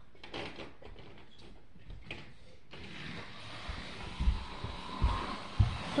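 Rustling and a few light clicks, then a run of low thumps growing louder over the last two seconds: a child's footsteps and movement on the floor close by.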